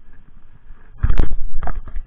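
A cluster of loud, sharp knocks and scrapes starting about a second in and lasting about a second, over a faint low background.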